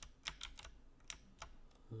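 Faint, irregular clicks of a computer keyboard and mouse, about seven in all, scattered unevenly.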